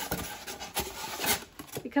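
Expanded polystyrene foam box being handled and opened: the foam lid and box rubbing and scraping against each other in a few short rasping strokes.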